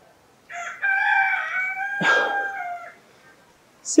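A rooster crowing once: one long call starting about half a second in and fading out about three seconds in.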